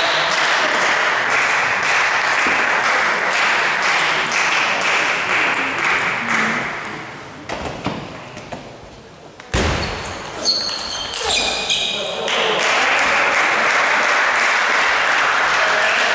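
Table tennis rally: the celluloid ball clicks off bats and table in quick sharp strikes for a few seconds mid-way, with a heavier thump and a few short high squeaks near its end. Before and after it, a steady din of many voices fills the sports hall.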